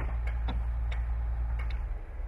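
About six short, sharp clicks at uneven intervals, the first the loudest, over a steady low rumble.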